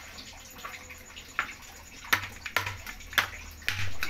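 A slotted spatula stirring a watery carrot and potato stew in a wok, with about five sharp knocks against the pan in the second half.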